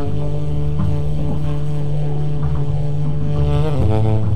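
Tenor saxophone holding one long, low note in an avant-garde jazz improvisation, dropping to a lower note just before the end, over a low upright-bass rumble.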